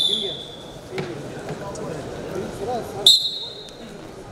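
Referee's whistle blown twice: a blast that ends about a second in, then a short, louder blast about three seconds in that restarts the bout. Crowd voices and shouts in a large hall fill the gap between the blasts.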